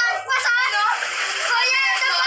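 Water splashing in an inflatable kiddie pool under loud, excited voices.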